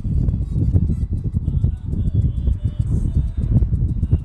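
Wind buffeting the microphone in an open-top convertible at highway speed: a heavy, gusting low rumble with road noise underneath.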